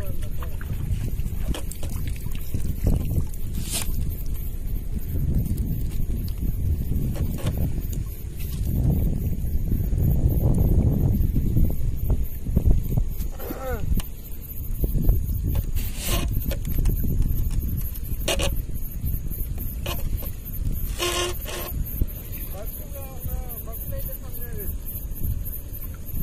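Wet gill net being hauled by hand over a small boat's side, under a steady low rumble. A few sharp knocks come through, along with short snatches of voices.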